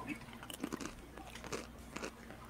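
Faint, irregular crackles and clicks.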